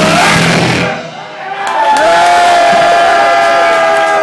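Live psychobilly band playing, the song stopping about a second in; then one long held yell into the microphone from the singer, with the crowd cheering.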